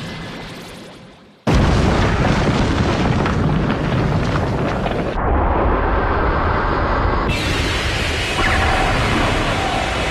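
Animated explosion sound effect: the sound fades almost away, then a sudden loud blast about a second and a half in is followed by a continuous, dense explosion rumble that shifts in character about five and seven seconds in.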